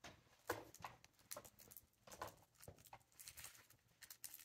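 Near silence: quiet room tone with faint, scattered small clicks and rustles.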